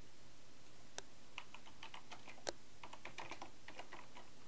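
Typing on a computer keyboard: a faint run of quick, irregular key clicks starting about a second in.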